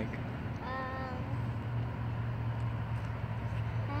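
A child's drawn-out, level-pitched 'um' about a second in, over a steady low rumble from riding along a paved path.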